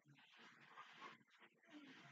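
Faint, low-volume Japanese dialogue from an anime playing in the background, a character's voice speaking a line, barely above near silence.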